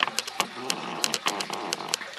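Water moving in an aquarium, with a run of irregular sharp ticks, about five or six a second.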